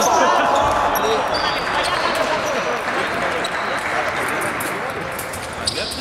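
Busy sports-hall noise: shoes squeaking on the wooden floor and overlapping voices. It is loudest just after the touch and eases off over the next few seconds.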